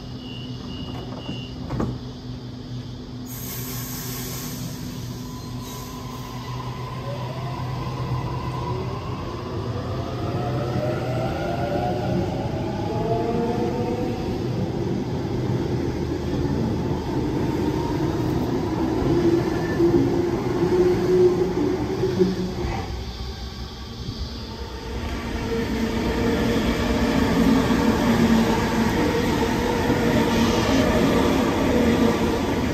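A Sydney Trains Waratah double-deck electric train pulls out and accelerates. Its traction motors give a whine that climbs in pitch in several layers, over growing wheel and rail rumble. A pulsing beep sounds for the first few seconds.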